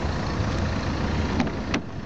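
Two short clicks near the end as the Saab 9-3's driver's door handle is pulled and the latch releases, over a steady low rumble.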